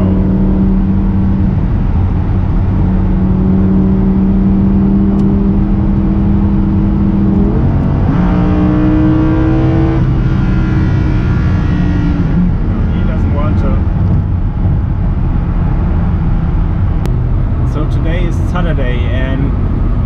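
Lamborghini Huracán LP610-4's V10 engine heard from inside the cabin at high autobahn speed, a steady engine drone over tyre and road noise. About eight seconds in the engine climbs in pitch for a couple of seconds under acceleration, then steadies again.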